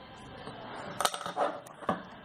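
Drawing instruments being handled on a desk: a sharp click about a second in and a few softer taps after it, over faint paper-and-hand rustle.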